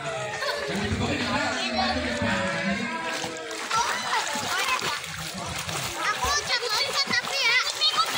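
Children splashing in a swimming pool, with children's high voices calling out over the water.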